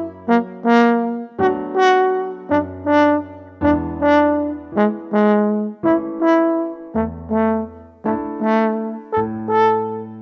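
Conn 8DS double French horn playing a slow Andante etude in 6/8, a steady lilting run of separate notes. A MIDI piano accompaniment holds low bass notes underneath.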